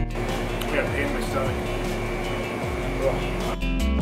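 Indistinct voices and room noise in a busy shop, with the backing music with a steady beat cutting out at the start and returning near the end.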